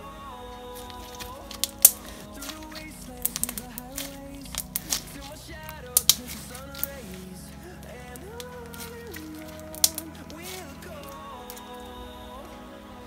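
Background music with a melody throughout. Over it, sharp, irregular clicks and pops come from blue slime being squeezed and stretched in the hand; the slime is a little stiff. The loudest clicks fall about two seconds and six seconds in.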